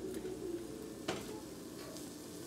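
Salmon fillets sizzling faintly in hot oil in a nonstick frying pan, with a single clink of a metal knife against the pan about a second in.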